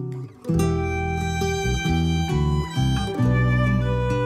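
Acoustic guitar music with no singing: plucked melody notes over changing bass notes. The playing briefly falls away about a third of a second in, then picks up again.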